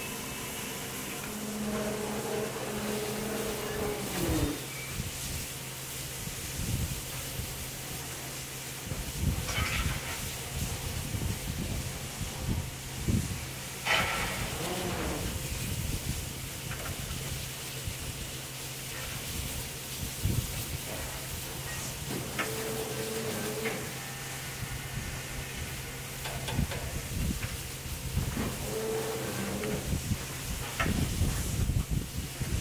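Steam locomotive hissing steam, with occasional knocks and clangs.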